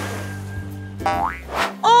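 Cartoon sound effects over steady background music: a water splash fading out, then a quick rising springy boing about halfway through.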